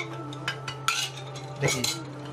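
Metal kitchen utensils clinking against cookware several times, with short ringing clinks near the middle and a longer run of them near the end, over a steady low hum.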